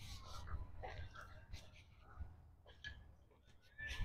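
Faint, distant voices of kids and people, with a drawn-out falling call near the start, over a low outdoor background.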